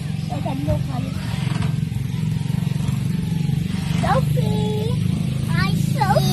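Children's voices: short gliding calls, then a held high note about four seconds in, over a steady low rumble.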